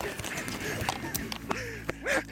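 Camera handling noise while it is carried through foliage: a few sharp knocks and rustles, with faint, indistinct voice sounds under them.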